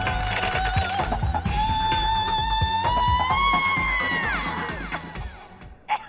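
An elderly woman singing into a microphone over backing music, holding one long, shrill high note. The note steps up in pitch twice, then slides down and fades out about four to five seconds in.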